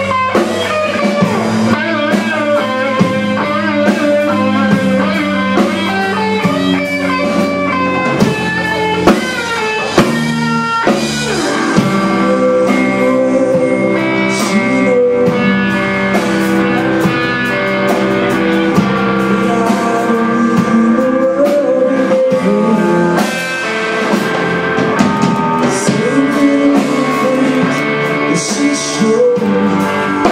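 Live rock band playing: electric guitar over a drum kit, the lead guitar's notes bending up and down in pitch.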